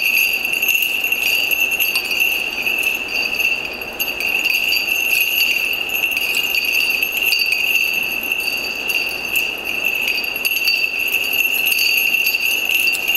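A censer hung with small bells being swung, its bells jingling continuously with a sustained high ringing and rapid clinks of the bells and chains.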